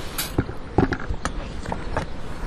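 A few light clicks and knocks, about five in two seconds, as objects are handled and set down, over steady background noise.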